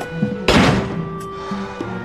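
An apartment door shutting with one heavy thunk about half a second in, over soft background music.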